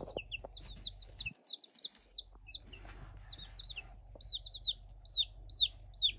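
Baby chicks peeping: a stream of short, high cheeps, each falling in pitch, several a second with only brief gaps.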